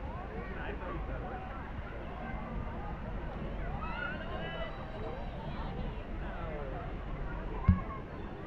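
Indistinct chatter of people's voices over a steady low rumble, with a single short thump near the end.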